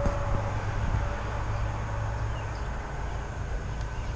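Lawn mower engines running steadily, heard as a low, even drone.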